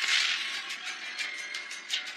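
Anime fight-scene sound effects: a rapid run of sharp cracks and swishes over background music.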